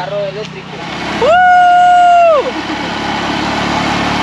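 A person's long, held "woo" cry, gliding up at the start and falling away at the end, followed by the steady engine and wind noise of riding on a small motorcycle.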